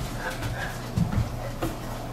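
Footsteps on a hardwood floor: a few soft, low thumps, two of them close together about a second in. There are also faint, short high-pitched sounds in the first half.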